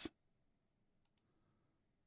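A computer mouse button clicked, heard as two faint, short clicks in quick succession about a second in.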